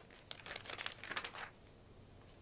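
Dry crinkling, rustling noise in a quick cluster of short bursts lasting about a second, then stopping.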